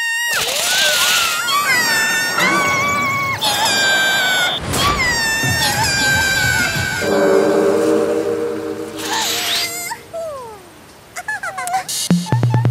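Cartoon rabbit's wordless vocal reactions: high, sliding squeals, wails and shrieks with abrupt breaks. About seven seconds in there is a lower, steady sound held for a couple of seconds, then it quiets near the end.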